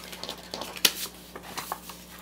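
Sheets of cut stencil and transfer tape handled on a tabletop: soft rustling and light taps, with one sharp tap just under a second in.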